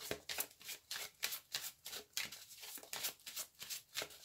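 Wisdom of Avalon oracle cards being shuffled by hand: a quick, even run of soft card strokes, about five a second.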